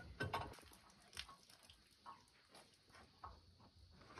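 Elephants feeding on oranges from a truck's load: faint, scattered crunches and rustles, the loudest in the first second or so.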